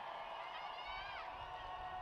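Stadium ambience between announcements: faint, echoing voice sounds over a steady background of scattered crowd noise.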